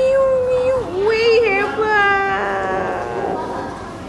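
A high voice singing out one long held note, which stops under a second in, then a second wavering note that slides downward and fades away.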